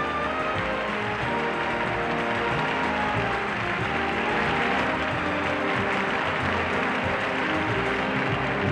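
Live orchestra playing walk-on music with sustained notes, under audience applause that swells through the middle.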